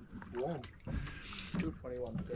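Brief, quiet snatches of indistinct speech, with light water sounds from a small boat on calm water between them.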